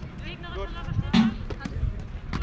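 A drum struck once about a second in, one beat of the steady count every second and a half that keeps time in a jugger match. Players' voices call around it.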